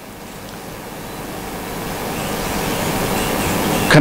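Steady background hiss of room noise picked up by the microphones, growing gradually louder during a pause in speech.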